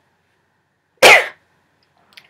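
A woman coughs once, loudly and abruptly, about a second in.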